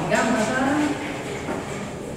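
A person speaks briefly in the first second, with echo, then a quieter stretch follows with a single faint knock about one and a half seconds in.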